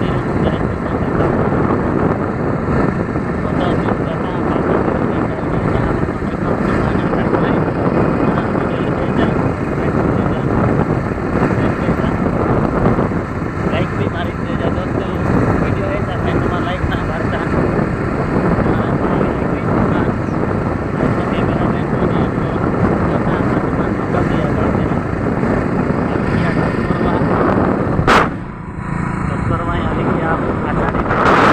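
Heavy wind buffeting on a phone microphone while travelling along a road, a continuous dense rumble mixed with vehicle noise. About two seconds before the end there is a single sharp click and a brief drop in level.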